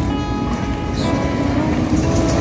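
BMW iX electric SUV's low-speed pedestrian warning sound: a steady synthetic hum of several held tones over a low rumble as the car rolls slowly forward.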